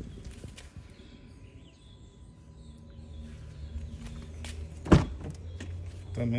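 Footsteps on pavement, then a single sharp clunk near the end as the rear door of a Fiat Fastback Abarth is unlatched and opened.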